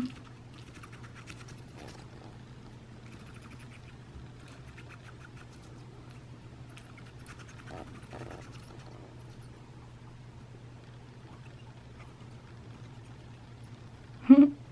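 Faint small wet clicks of an African pygmy hedgehog licking and chewing at a ceramic dish, over a low steady hum.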